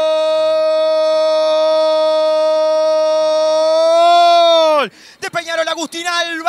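A Spanish-language radio football commentator's drawn-out goal cry, one long held "gooool" on a steady pitch. It swells slightly, then drops away with a sharp fall in pitch near the end, and rapid speech starts right after.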